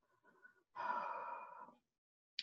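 A woman's audible breath, a sigh about a second long beginning just under a second in, picked up close on a desk microphone.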